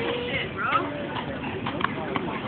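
Bystanders' voices with a few sharp knocks in the second half.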